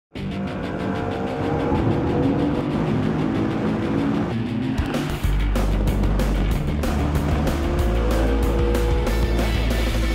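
An engine accelerating, its pitch climbing over the first few seconds and again near the end, laid under music; a heavy bass beat comes in about five seconds in.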